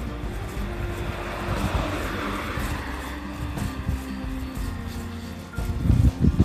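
A car passing on the road alongside, its tyre and engine noise swelling to a peak about two seconds in and fading away, over soft background music.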